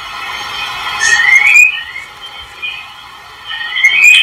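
Birds chirping in the background, with a rising chirp about a second in and another near the end.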